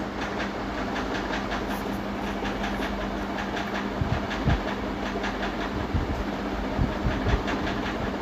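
Hand mixing a crumbly mixture of rolled oats, flour and ghee with jaggery syrup on a plate: fingers rubbing and pressing the grains against the plate give a run of scratchy clicks, several a second, over a steady low hum.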